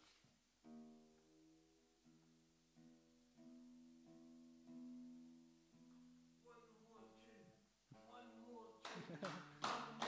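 Acoustic guitar being retuned: single strings plucked softly and left to ring one after another while the tuning pegs are turned, with a few quicker, louder notes near the end.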